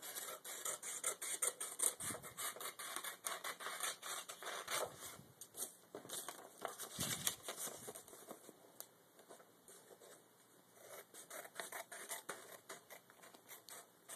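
Scissors snipping through folded computer paper in a quick run of crisp cuts. They stop for a couple of seconds about two-thirds of the way in, then start cutting again.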